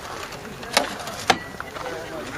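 Two sharp clicks about half a second apart from a Pro/Tran generator transfer switch being handled, its GEN/OFF/LINE rocker switches flipped.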